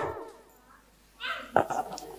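A brief, faint whimper-like cry about a second in, with a soft knock just after it.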